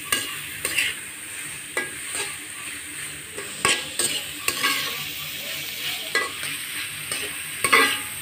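Chopped onions frying in hot oil in a metal pan, sizzling steadily, while a metal spatula stirs them and scrapes and clicks against the pan every second or so. The onions are being fried until reddish-brown.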